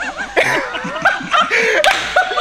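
Men laughing and chuckling.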